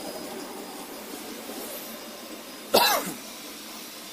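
A biodegradable drinking-straw machine runs with a steady noise. A little under three seconds in, a person coughs once, loudly and briefly.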